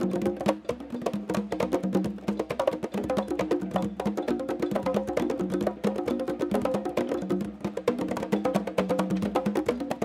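A group of conga drums playing an Afro-Cuban hand-drum groove: a steady accompanying pattern with the quinto, the highest conga, soloing over it in a dense stream of quick strokes.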